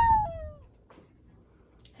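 A drawn-out, sing-song vowel from a person's voice trails off in a falling glide during the first half-second. Near silence follows, and speech starts right at the end.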